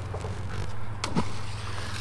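Steady low hum of road traffic on the highway bridge overhead, with one short falling whistle-like sweep about a second in.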